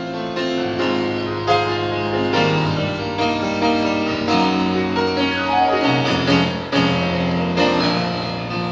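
Grand piano playing an instrumental passage: several notes sounding together, with a melody over them.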